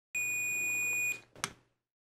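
DT830L digital multimeter's continuity buzzer giving one steady, high-pitched beep about a second long as its probes touch the metal casing of a battery, a sign of a conductive path. A short click follows about half a second later.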